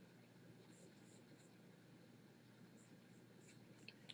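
Near silence: faint room tone with a few very soft, scattered scratchy ticks.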